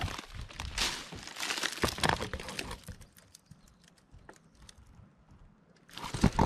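Dry fan-palm fronds and debris crackling and crunching with quick clicks and snaps for the first half. Then it drops to near quiet with only faint scattered ticks, heard close against the fallen palm trunk, where the grubs' boring makes a ticking that marks a trunk holding palm weevil grubs.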